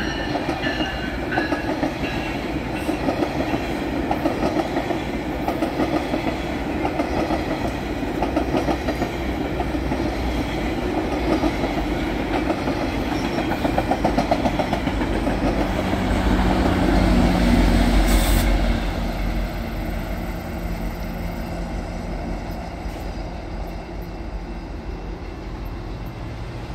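GO Transit bilevel push-pull train passing at speed, its wheels clattering over the rails. The sound swells to a low diesel drone as the pushing locomotive at the rear, an MP40PH-3C, goes by about two-thirds of the way through, then fades as the train recedes.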